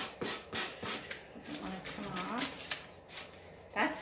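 Sanding sponge rubbed in quick, short rasping strokes along the edge of a paper-covered wooden drawer front, taking off the overhanging decoupage paper; the strokes are densest in the first second. A voice murmurs briefly midway.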